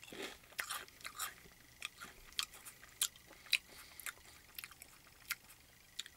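A person chewing a crisp shrimp-and-squid cracker stick: an irregular run of short, sharp crunches as the puffed cracker breaks up in the mouth.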